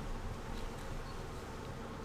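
A steady hum over even, faint background room noise, with no distinct events.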